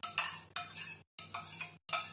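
Metal spoon stirring and scraping against the inside of a small stainless-steel bowl, a few short strokes with light clinks.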